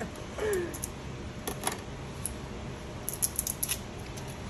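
A few small sharp clicks and taps, with a quick cluster of them near the end, from a small plastic glue bottle being handled and its nozzle tip cut open.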